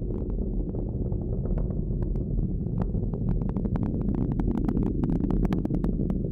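Falcon 9 rocket's nine Merlin first-stage engines heard from the ground: a steady deep rumble laced with sharp crackles that grow denser toward the end.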